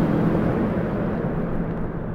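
Steady low rumble of distant city noise, its hiss thinning out near the end.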